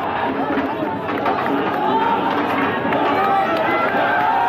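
A large crowd of spectators: many overlapping voices chattering and calling out, with a few longer shouts standing out.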